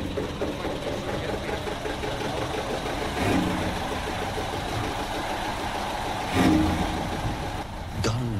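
An engine running steadily, with two brief louder swells, one about three seconds in and another about six seconds in.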